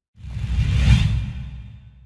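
Whoosh sound effect with a low rumble under it, accompanying an animated logo reveal: it swells in just after the start, peaks about a second in, then fades away.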